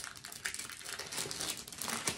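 Plastic packaging crinkling and rustling as bagged diamond painting drills are slid out of a rolled canvas tube, with small irregular ticks throughout.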